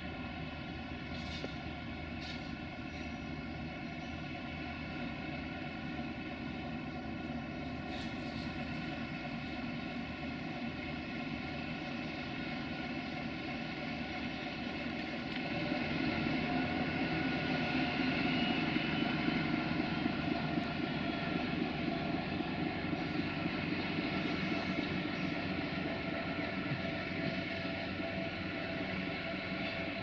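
LDH1250 diesel-hydraulic shunting locomotive's diesel engine running steadily as the locomotive moves. The engine gets louder about halfway through and stays louder.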